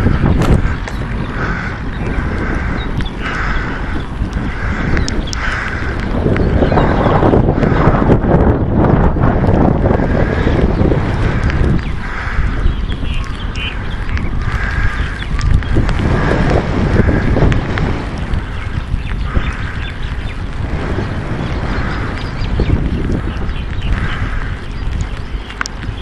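Strong, gusting wind buffeting the microphone: a loud rumble that swells and eases in gusts.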